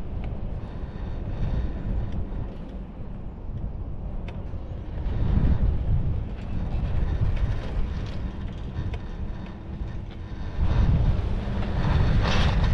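Low rumble of a ride on a Doppelmayr detachable chairlift, with wind on the microphone and a few light clicks from the haul rope and grip running over the tower sheaves. The rumble swells about halfway through and again near the end.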